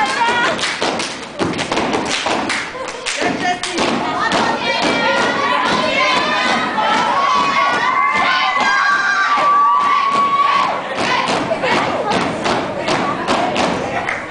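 Step team stomping and clapping in quick rhythm on a wooden stage floor, with shouts and cheering over the beats, including one long held shout a little past the middle.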